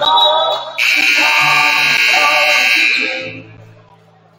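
Gym scoreboard horn sounding one steady blast of about two and a half seconds, starting about a second in, over music with singing. The horn signals the end of the break before the fourth quarter.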